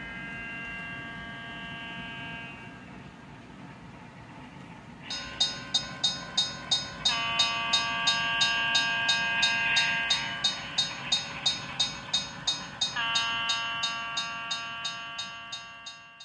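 Sound-equipped model train: a multi-note horn sounds in long blasts over a low running rumble. About five seconds in, a crossing bell starts ringing, about three strokes a second, as the train crosses the road.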